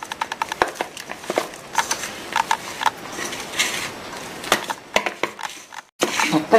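Hands rubbing and crumbling a crumbly rice-flour mixture in a stainless steel bowl: an irregular run of short scratchy rubs and small clicks as fingers work the flour against the bowl.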